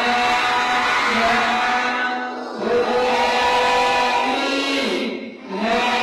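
A large group of children chanting a prayer in unison, in long held phrases with short breaks about two and a half and five and a half seconds in.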